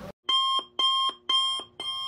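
Electronic alarm-clock-style beeping: four even beeps, about two a second. It serves as a sound effect over an intro title card.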